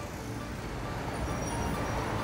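Heavy city road traffic, cars and buses, running as a steady noise that swells about a second in, under background film music of scattered held notes.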